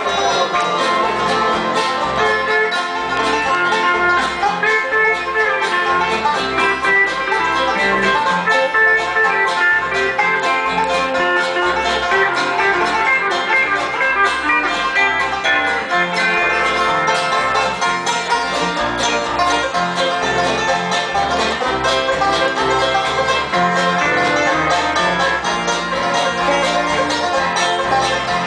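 Instrumental break on banjo, steel guitar and acoustic guitar, with no singing: a steady stream of quick picked banjo notes over the other strings.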